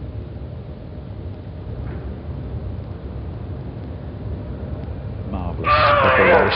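Arena background during a lift in a weightlifting broadcast: a low, steady rumble with no clear bar impacts. A commentator's voice comes in near the end.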